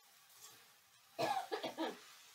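A person coughing three times in quick succession, starting a little past halfway.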